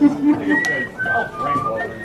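A short whistled melody in pure, high notes: a held note that steps down twice, then rises again and holds into a long note. A brief chuckle comes just before it.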